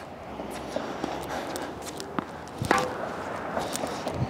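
Sneaker footsteps on a hard tennis court, with a few faint scattered knocks; the clearest knock comes a little under three seconds in.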